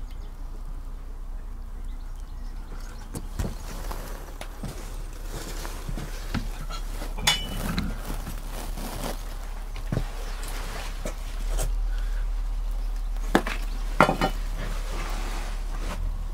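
Compost being dug out through a cut in a plastic grow bag: scattered scraping, rustling and light clinks of a small tool, with a few sharper clicks near the end.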